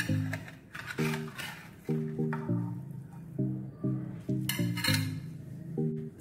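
Background music of steady plucked notes, with a few short metallic scrapes and clinks of a knife against a metal baking tin and of the tin and a ceramic plate, as a baked egg sheet is loosened and turned out.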